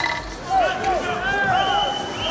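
Basketball shoes squeaking on a hardwood court in a series of short, rising and falling chirps over arena crowd noise.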